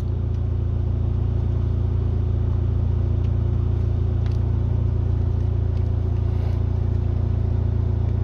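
Vehicle engine idling steadily, a low, even hum with a few faint ticks over it.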